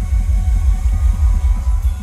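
Live rock band with keyboards, bass guitar and drums playing loudly through a stage PA, heavy low bass under a quick run of repeated low notes.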